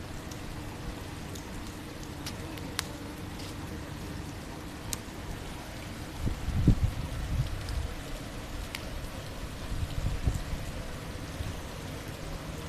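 Swimming-pool water lapping and dripping at the stone edge, a steady watery hiss with a few sharp drip ticks. Low rumbling bumps on the microphone about six seconds in and again near ten seconds are the loudest sounds.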